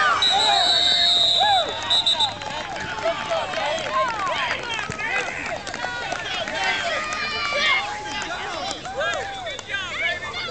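Many voices of spectators and players shouting and yelling at once, loudest in the first two seconds. A referee's whistle blows a long blast then a short one, stopping about two seconds in.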